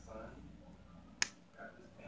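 A single sharp click a little past halfway, over faint voices in the room.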